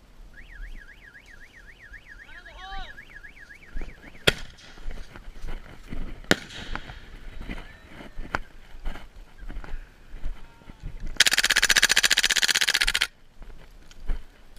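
A warbling electronic alarm tone, rising and falling about four times a second, sounds for the first few seconds. Then come a few sharp cracks, and near the end a loud rattling burst lasting about two seconds.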